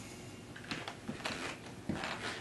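Faint handling noises: a few light clicks and rustles as hands move over the switched-off lathe and its attachments.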